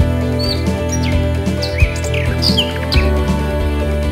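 Instrumental background music, with short bird chirps heard over it in the first three seconds.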